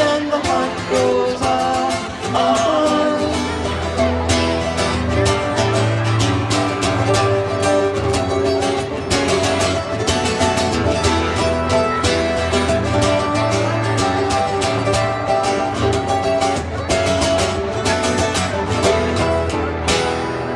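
Live band playing an instrumental stretch of a song: guitars with a drum kit keeping a steady beat, and low bass notes coming in about three seconds in.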